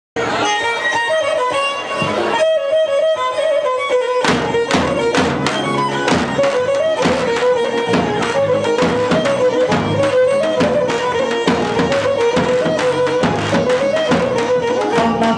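Live traditional Greek dance music: a bowed Pontic lyra plays a melody, and a drum comes in with a steady beat about four seconds in.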